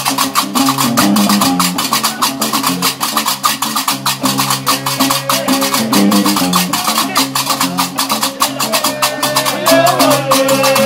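Gnawa (diwan) music: a guembri bass lute plucks a repeating low riff under the fast, steady clatter of qraqeb iron castanets.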